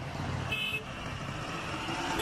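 Highway traffic noise as a Tata truck drives towards and past, with a short high horn toot about half a second in.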